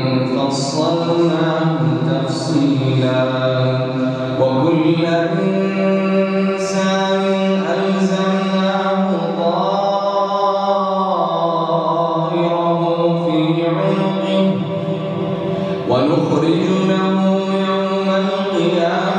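A man's voice reciting the Quran in Arabic in the melodic, drawn-out style of a prayer imam, holding long ornamented notes through a microphone. The phrases break briefly about four seconds in and again near fifteen seconds.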